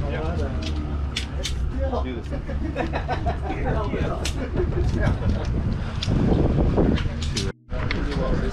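Indistinct voices of a small group of people talking over a steady low rumble, with sharp clicks now and then. The sound cuts out briefly near the end.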